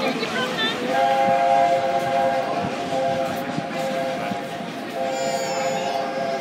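Steam locomotive's whistle sounding two long blasts as the train departs, each a steady chord of several notes held together. The first starts about a second in and fades after about three seconds. The second starts near the end.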